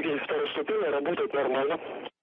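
A voice speaking over a radio link, continuous and narrow-sounding, stopping abruptly right at the end.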